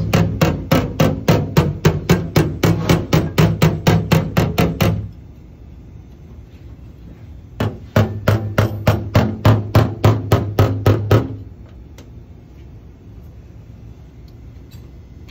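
Body hammer tapping rapidly on a car body panel around a dent, about four or five strikes a second. The tapping runs until about five seconds in, stops, then starts again just before eight seconds in and runs for about three and a half seconds. The tapping relieves tension in the metal around the dent while a pulling bridge holds the body line out.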